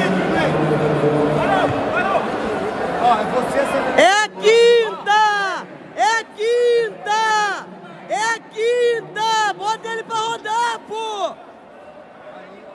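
Arena crowd chatter, then from about four seconds in a person shouting more than a dozen short, loud calls in quick succession, each rising and falling in pitch, stopping near the end.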